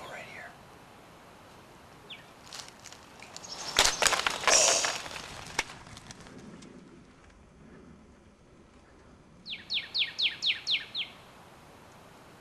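A run of about seven quick turkey yelps, each note falling in pitch, near the end. Around four seconds in there is a loud burst of rustling handling noise.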